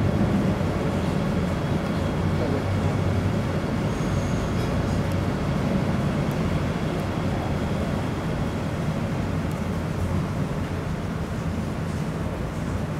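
A steady, low rush of moving water with a faint hum.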